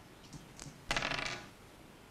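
Dice clattering onto a table: a quick rattling burst of small hard clicks about a second in, lasting about half a second.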